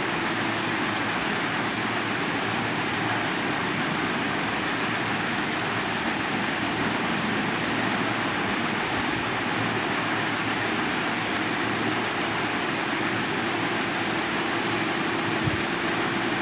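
Steady, even hiss with a faint low hum underneath, unchanging in level: room background noise with nothing else happening.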